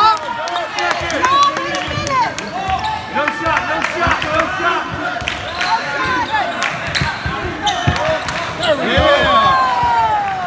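A basketball bouncing repeatedly as it is dribbled on a hardwood gym floor. Short squeaks of sneakers on the boards and voices in the hall come through throughout.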